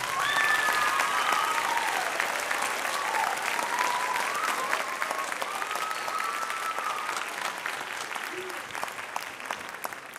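Audience applause, with a few high voices calling out over the clapping; it thins out near the end.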